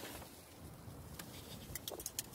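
Quiet handling under the hood: a few faint light clicks, about a second in and again near the end, as a hand takes hold of the plastic power steering reservoir cap.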